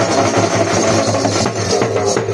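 Live folk dance music: a slung barrel drum beaten in a fast, steady rhythm with other hand percussion, over sustained tones.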